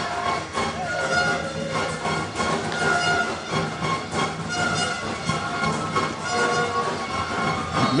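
Stadium crowd sound dominated by horns blown in the stands: several sustained tones at different pitches, changing every second or so, over a constant crowd hubbub with frequent sharp hits.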